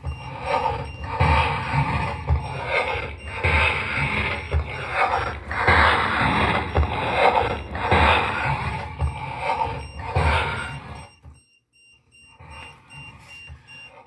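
Slowed-down playback of a noisy EVP audio recording through computer speakers: hiss and indistinct murmuring with low thumps, which the recorder hears as a voice saying "mad" or "sad". It cuts out for about a second near the end, then continues faintly.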